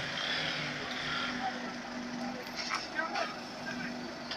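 Onlookers' voices over a steady low engine hum, with a few short clicks about three seconds in.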